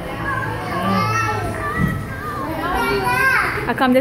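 Children's voices chattering and calling out over one another, with background music.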